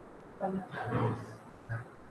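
A man's voice making a short low murmur that is not clear words, followed by a brief second sound near the end.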